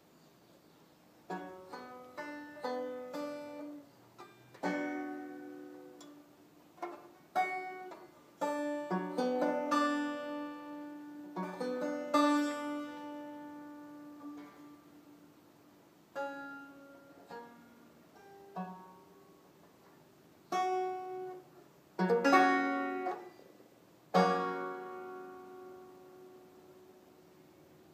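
Banjo picked and strummed slowly through a Bm chord, in clusters of plucked notes that ring and decay with short pauses between, moving toward an F# chord at the end. It starts about a second in.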